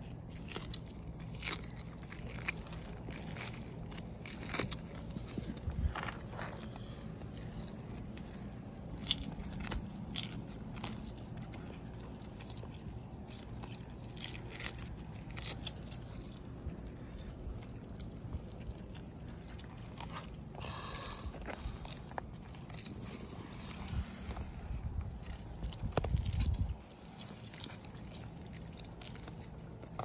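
Sulcata tortoises biting and chewing a prickly pear cactus pad, with irregular crunches all through. A louder low rumble runs for a couple of seconds near the end.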